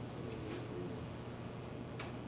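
Courtroom room tone: a steady low electrical hum under faint background noise, with a faint murmur about half a second in.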